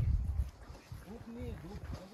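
Strong wind buffeting the microphone with a low rumble at the start, easing off within half a second, then faint voices.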